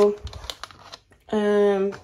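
A woman's long, drawn-out hesitation "yy", preceded by faint crinkling and a light tap as plastic-wrapped ready-meal trays are handled.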